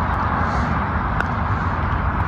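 Steady outdoor background noise, a low rumble with a hiss over it, with one faint short click about a second in.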